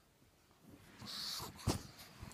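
A pug breathing noisily as it scrambles up, with a sharp thump about three quarters of the way through as it jumps against the sofa and the phone.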